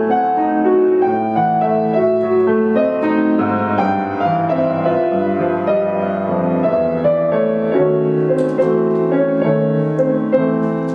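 Grand piano playing a classical accompaniment of chords and moving lines. A baritone saxophone comes in again near the end.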